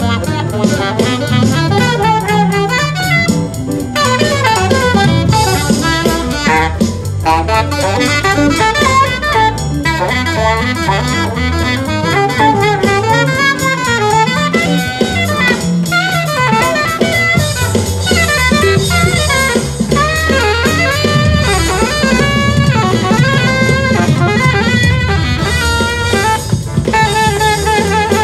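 Alto saxophone played live in quick, winding runs of notes, over an accompaniment with drum kit and bass.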